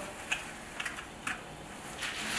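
A few faint plastic clicks as a disposable probe cover is fitted onto the tip of a handheld tympanic ear thermometer.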